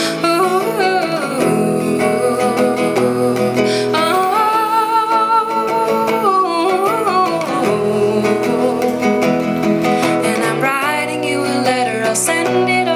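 A woman singing long, held notes that glide in pitch, over a plucked acoustic guitar.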